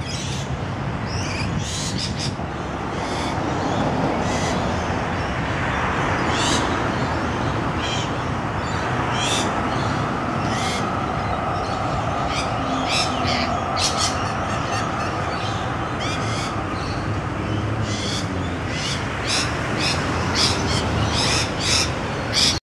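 Rainbow lorikeets giving short, shrill calls again and again, coming thicker near the end, over a steady background rumble.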